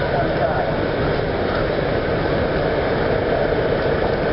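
Steady outdoor background noise with a low rumble and indistinct voices of people talking.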